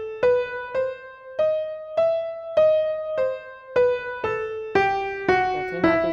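Piano playing an E minor scale one note at a time, about two notes a second, climbing to the top E and then stepping back down.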